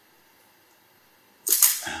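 Near silence for about a second and a half, then a man's sharp intake of breath, and his voice starts again right at the end.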